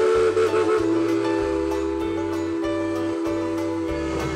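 Narrow-gauge steam locomotive's whistle blowing one long blast that drops slightly in pitch about a second in, over background music with a stepping bass line.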